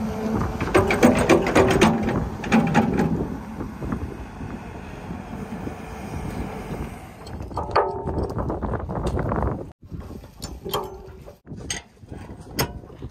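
Steel excavator bucket and attachment parts creaking and clanking, loudest in the first three seconds, then short metallic creaks and clinks as a bucket tooth and its pin are fitted.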